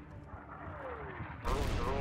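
A faint falling whistle of an incoming mortar round, then a sudden rush of noise about a second and a half in.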